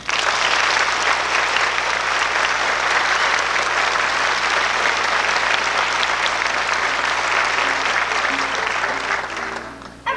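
Audience applauding, starting suddenly as a song ends and dying away near the end.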